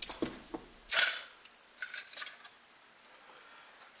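Hand tools handled on a workbench: a few small clicks, then a brief rustling noise about a second in and a shorter one about two seconds in.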